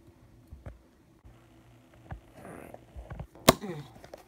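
Scissors cutting through the tape seal on a cardboard box: faint scraping and small clicks, then one sharp, loud click about three and a half seconds in as the flap comes free.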